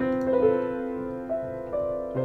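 Soft, slow piano music: single notes and small chords struck every half second or so, each left to ring and fade.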